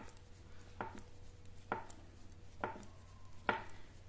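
Knitting needles clicking against each other as stitches are worked, one sharp click about once a second.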